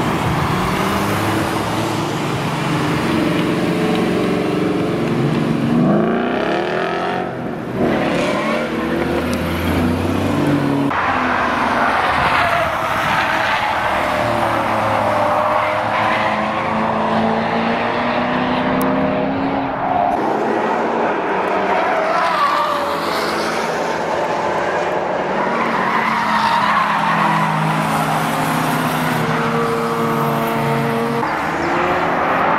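Performance car engines, a Ford Mustang and a Chevrolet Corvette among them, revving and accelerating past one after another, the pitch climbing and dropping through the gears. The sound breaks off briefly around seven to eight seconds in and again near eleven seconds, where the footage cuts to the next car.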